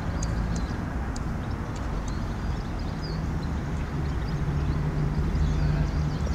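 Steady low rumble of motor traffic, with a few faint short high ticks in the first two seconds.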